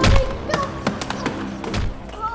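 A person falling down a staircase: a run of thumps and knocks, about five over two seconds, the loudest at the start, over music.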